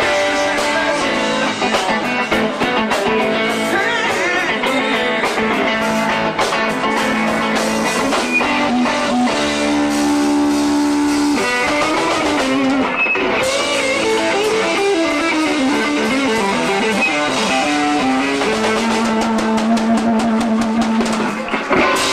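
Live rock band with an electric guitar playing a lead line over drums: bent notes, a long held note about ten seconds in, a falling run of notes after it and another held note near the end.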